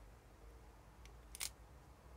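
Near silence, broken by a faint tick about a second in and a sharper click a moment later, as the plastic windshield piece is handled against the die-cast toy car body.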